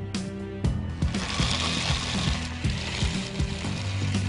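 Rapid mechanical clicking over background music, with a hissing rush for a second or so about a second in.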